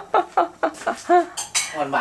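A metal utensil clinking and scraping against an aluminium stockpot of simmering soup as it is stirred, with several quick clinks in the first second or so.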